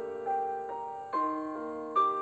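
Background piano music: a slow, gentle melody of single notes, a new note struck roughly every half second, each ringing and fading.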